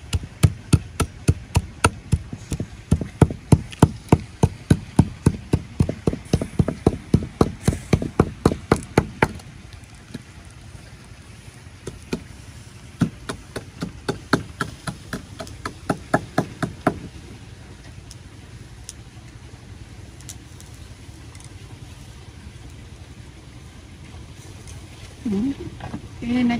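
Butt of a knife handle pounding coarse salt and chili in a ceramic bowl: rapid, even knocks about four a second, stopping about nine seconds in. A second, shorter run of knocks comes a few seconds later.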